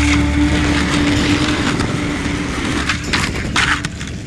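Skateboard wheels rolling over asphalt, with a few sharp clacks of the board about three and a half seconds in.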